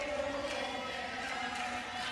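Steady background hubbub of a sports-hall crowd, with faint indistinct voices and no clear single event.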